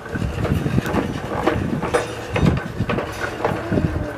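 Plastic toy push lawnmower rolling over a tiled patio, its wheels and plastic parts clattering in a run of irregular clicks and rattles.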